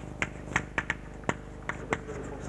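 Chalk clicking against a blackboard as a word is handwritten: a string of sharp, unevenly spaced clicks, about seven or eight in two seconds.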